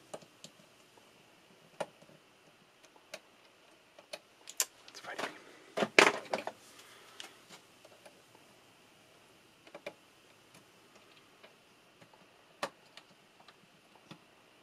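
Scattered light clicks and taps of a screwdriver and small metal and plastic parts as the eject motor is fitted and screwed into an Apple MF355F floppy drive's chassis, with a run of louder clicks about five to six and a half seconds in.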